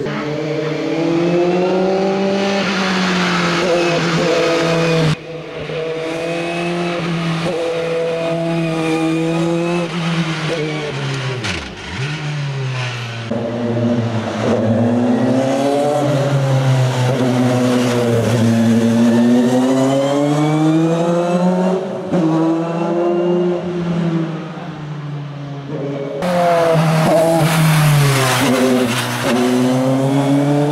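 Dallara F301 Formula 3 single-seater racing engine at full throttle, its pitch climbing and dropping again and again as it accelerates, shifts gear and brakes for the hairpins; the engine note falls very low about twelve seconds in before revving back up.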